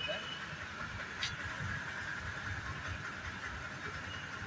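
Steady hum of a petrol pump dispensing fuel into a car's tank, over a low rumble.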